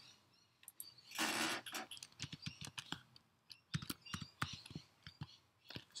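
Typing on a computer keyboard: a run of quick, irregular key clicks entering a file path, after a short rush of noise about a second in.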